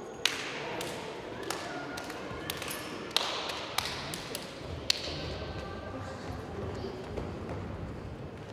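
Echoing indoor sports-hall sound: players' scattered voices with several sharp knocks and taps, the loudest just after the start, about three seconds in and about five seconds in.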